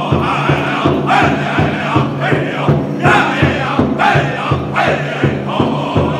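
Powwow drum group: several men singing together while striking a large shared hide drum with padded sticks in a steady, even beat.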